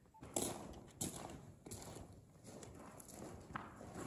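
Footsteps crunching on a gravel-covered mine floor, one step about every two-thirds of a second.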